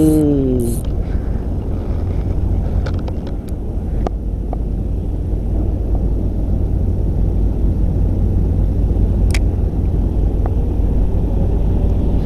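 A steady low rumble throughout, with a couple of faint clicks about four and nine and a half seconds in; a man's voice trails off at the start.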